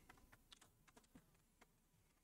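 Near silence, with a few faint, scattered light clicks.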